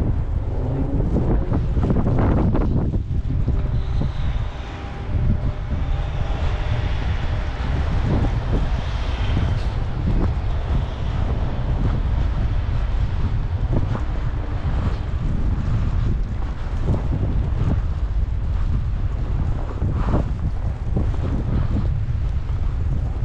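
Wind buffeting the camera's microphone in a snowstorm, a steady heavy rumble, with scattered knocks and brief swishes over it.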